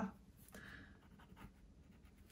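Faint scratching of a fine-tip ink drawing pen drawing short shading lines on cold-press watercolour paper, loudest for about half a second starting half a second in.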